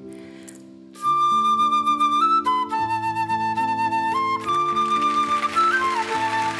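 Concert flute playing a melody over a soft, sustained musical accompaniment; the flute comes in loudly about a second in and moves through a run of held notes.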